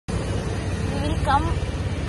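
Low, steady hum of a motor vehicle's engine running close by on the street.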